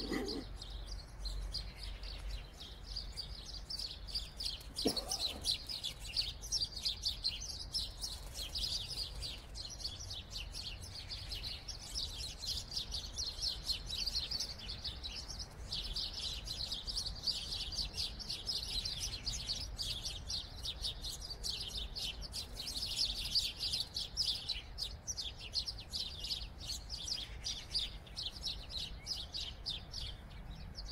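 Small birds chirping and twittering in a rapid, continuous chatter, over a steady low rumble. A brief falling tone sounds about five seconds in.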